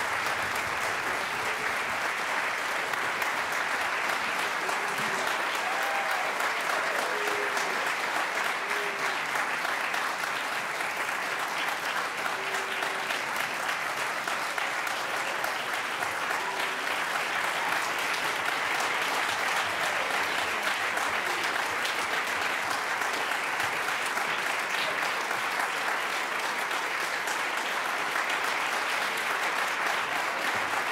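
Audience applause in an auditorium, a steady, continuous clapping for the whole stretch as the performers take their bows at the close of the concert.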